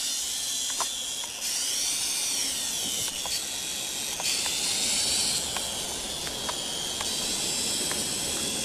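Small toy quadcopter's motors and propellers whining in flight, the high whine rising and falling in pitch as the motors speed up and slow down.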